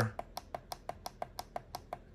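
The minus button on an AstroAI cordless tire inflator's control panel is pressed over and over, stepping the set pressure down in 0.5 PSI steps. It makes a fast, even run of about a dozen small clicks, roughly six a second.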